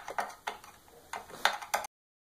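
Screwdriver working on screws in a hoverboard's chassis: a handful of short, sharp clicks at uneven intervals, before the sound cuts off suddenly near the end.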